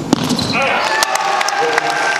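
A sharp tennis ball impact about a tenth of a second in, followed by a few lighter clicks and scattered voices from the crowd.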